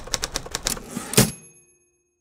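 Typewriter sound effect: a quick run of key clacks ending in a louder strike and a bell-like ding that rings and fades away.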